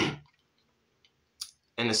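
A man's short throat-clear, then a pause broken by a small sharp click about a second and a half in, just before he starts speaking again.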